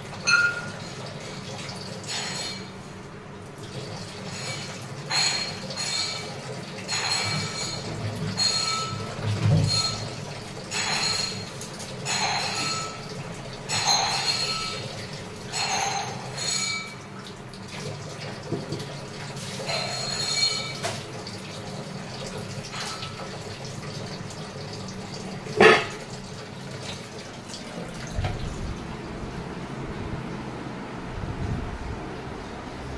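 A stainless-steel vessel clinking and ringing as it is handled, with water sloshing, in short bursts every second or so. One sharper clatter comes near the end.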